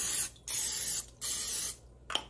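Aerosol cooking spray hissing into the cups of a metal muffin tin in short bursts, about three in two seconds, greasing the cups.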